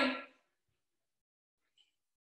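A woman's spoken words ending about a third of a second in, then near silence.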